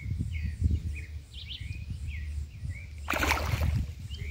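A hooked fish splashing and thrashing at the water's surface beside the bank: a loud, noisy burst about three seconds in, lasting under a second. Small birds chirp repeatedly throughout, over a low rumble.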